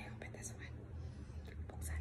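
A woman's soft whispering, with a few faint handling taps over a low steady hum.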